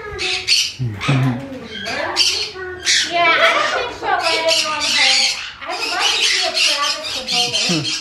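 Macaws squawking, loud calls repeated one after another.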